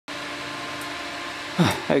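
Two strong electric fans running steadily, blowing air across aluminium fins: a constant hum with a low tone and a whoosh of moving air.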